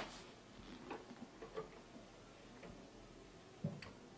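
Faint, irregular clicks and small knocks of props being handled at a table, with a sharper knock at the start.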